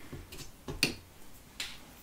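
A few light clicks and taps, the clearest about a second in: plastic flower cutters being handled, set down and picked up on a plastic cutting board.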